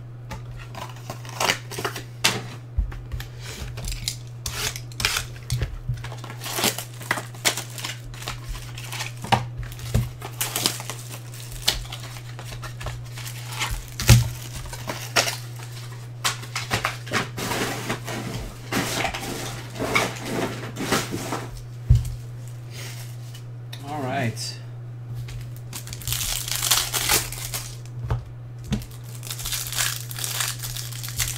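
Trading cards in hard plastic holders and card packs being handled: scattered sharp clicks and taps of plastic on plastic. Near the end a pack's plastic wrapper crinkles and tears as it is opened. A steady low electrical hum runs underneath.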